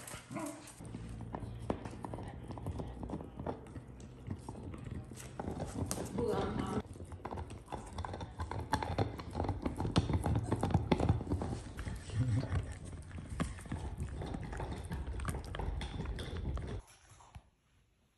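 Dogs moving about and playing, with a busy patter of clicks and knocks and a dog's vocal sounds now and then; the sound stops abruptly about a second before the end.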